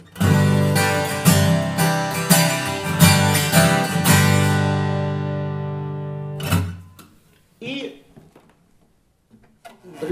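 Sigma D-28-style dreadnought acoustic guitar with a spruce top and rosewood body, strummed in full chords about once a second for some four seconds. The last chord is left to ring and fade, with one more short stroke about six and a half seconds in.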